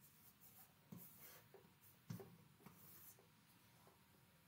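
Faint chalk writing on a chalkboard: a few short scratching strokes, with two sharper taps of the chalk about one and two seconds in.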